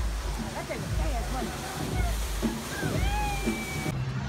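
Voices talking and calling out over a steady wash of running water from a water slide, with one drawn-out call near the end.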